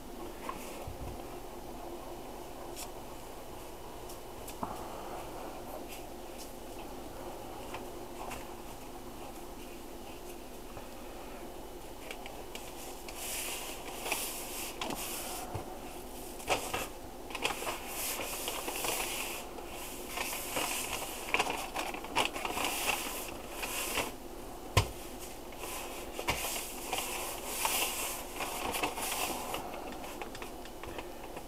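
A faint steady hum for the first dozen seconds, then irregular paper rustling and scraping as a cornmeal-coated pork loin is pressed and turned on a crinkling sheet of paper by hand.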